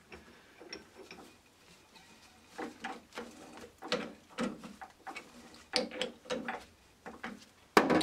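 Chuck key working the scroll of a three-jaw lathe chuck, tightening its jaws onto a steel test bar: small clusters of metallic clicks and scrapes, then a sharp knock shortly before the end.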